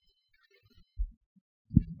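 Two dull low thumps, one about a second in and a louder one near the end: handling noise from a handheld microphone being moved and raised to the mouth.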